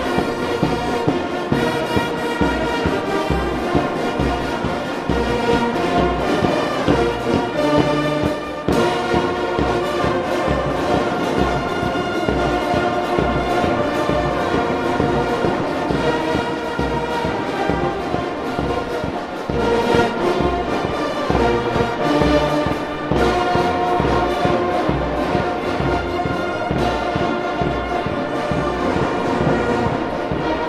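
Military marching band playing a march: sousaphones, trombones and trumpets carry the tune over a steady drum beat.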